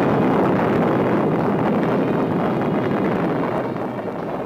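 Rocket engine firing at launch: a loud, steady rushing noise that cuts in abruptly just before and eases off slightly toward the end.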